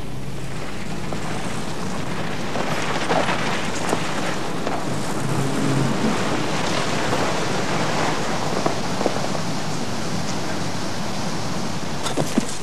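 A car driving slowly along a drive: a steady rushing noise of tyres and engine.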